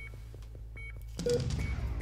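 A single electronic patient-monitor beep over a low steady hum, with a rustle of movement in the second half.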